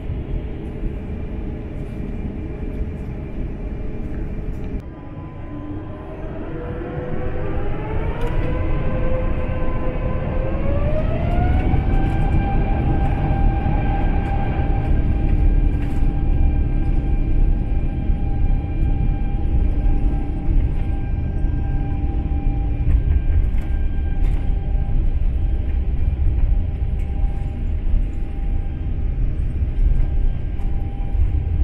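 Airbus A350's Rolls-Royce Trent XWB engines spooling up for the takeoff roll, heard inside the cabin. Over a steady rumble, a whine starts about six seconds in, rises in two steps and settles into a steady high whine by about twelve seconds, while the rumble grows louder as the aircraft accelerates.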